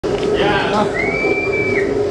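A single high whistle held for nearly a second, rising at the start and dropping off at the end, from someone in the audience, amid crowd voices.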